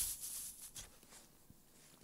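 A short, faint airy hiss of breath through pursed lips, lasting about half a second, as in sipping something hot through a thin straw.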